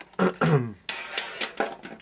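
A brief throat-clearing grunt, falling in pitch, then a run of light plastic clicks and knocks as multimeter test leads, with their probes and plugs, are handled and set down by the plastic packaging tray.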